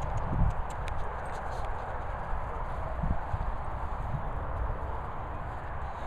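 Footsteps through grass with a steady low rumble.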